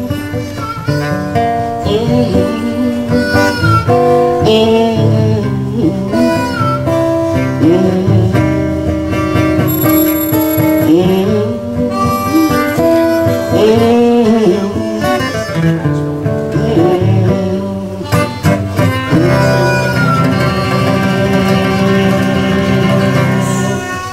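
Blues harmonica solo, cupped in the hands against a microphone, playing notes that bend and slide in pitch over acoustic guitar accompaniment.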